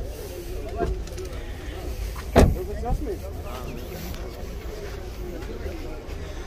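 Chevrolet Cobalt's car door shut with a single loud thump about two and a half seconds in, over a murmur of voices.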